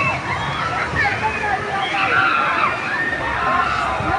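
Water rushing and sloshing down the concrete channel of an amusement-park river rapids ride, with people's voices over it.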